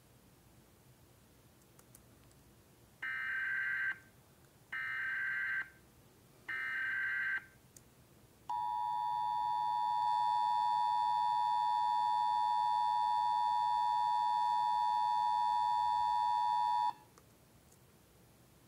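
Emergency Alert System sound effect played through a computer's speakers: three short bursts of SAME header data tones, then the steady two-tone EAS attention signal held for about eight seconds, which cuts off suddenly.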